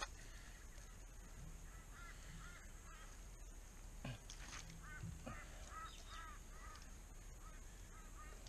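Faint run of short, arched bird calls, about ten in quick succession from about two seconds in until past six seconds, with a couple of sharp clicks in the middle.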